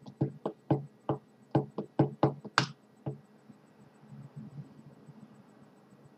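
A quick, irregular run of about a dozen sharp knocks or taps over the first three seconds, the last one a little longer and brighter.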